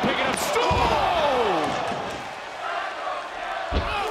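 Heavy thuds of wrestlers' bodies landing on a wrestling ring: one about two-thirds of a second in and a sharper, louder one near the end. In between comes a long falling shout.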